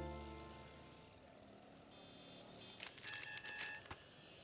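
Background score of sustained tones fading out over the first second, leaving a quiet stretch. A few faint clicks and short high tones follow about three seconds in.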